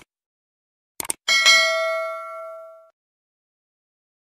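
Subscribe-button animation sound effect: quick mouse-click sounds, then a notification bell ding about a second in that rings out and fades over about a second and a half.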